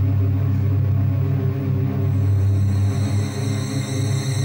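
Dramatic background score: a sustained low, brooding drone, with high thin shimmering tones coming in about halfway through.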